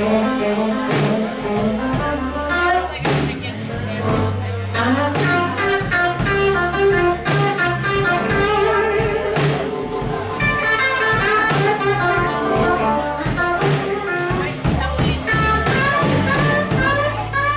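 A live blues band playing: amplified blues harmonica blown through a cupped microphone over electric guitar and drums, the harp's lead line wavering and bending.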